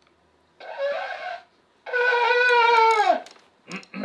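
Two high-pitched cries: a short one about half a second in, then a longer held one that falls in pitch as it ends.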